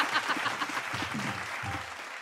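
Studio audience applauding, the clapping fading away.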